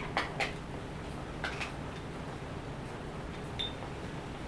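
Key being turned in a mid-to-late-1800s wrought-iron Viennese puzzle padlock: a few faint metallic clicks from the lock's mechanism, two just after the start and one about a second and a half in, then a short metallic ping near the end.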